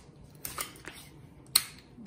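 A few small sharp clicks of hands handling things on a countertop, the loudest about a second and a half in.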